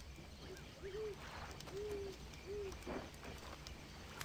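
An owl hooting faintly: four short hoots, each rising and falling, spaced well under a second apart, with two faint rustles in between.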